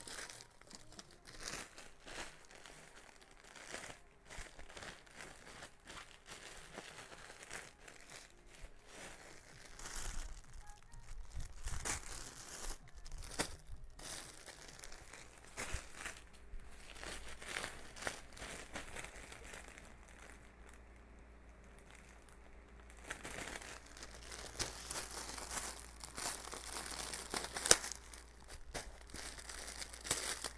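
Plastic packaging crinkling and rustling as bagged clothing is handled, in irregular spells that grow louder around the middle and again near the end, with one sharp crackle just before the end.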